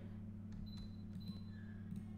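Low, steady electrical hum with faint room tone from the recording setup, with no speech.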